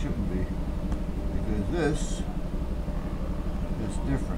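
A steady low hum runs throughout, with a brief muttered voice about two seconds in.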